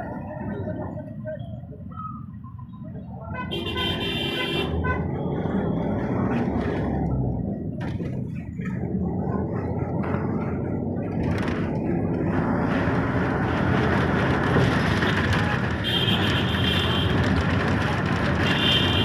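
Traffic noise with vehicle horns: a horn honks briefly about four seconds in and again near the end. Under it, engine and road rumble grows louder through the second half as the vehicle gets moving.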